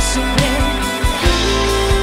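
A live pop band playing: drum kit, electric guitar and keyboard, with regular drum hits. A long held note comes in a little past halfway.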